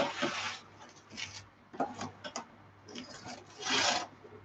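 Plastic cling wrap pulled from its cardboard box and crinkled over a glass dish: short spells of rasping, crinkling plastic, loudest at the start and again near the end.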